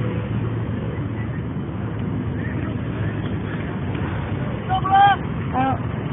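Steady outdoor background noise on a phone microphone at a soccer game, with a loud shout about five seconds in that rises and falls in pitch, followed by a shorter call.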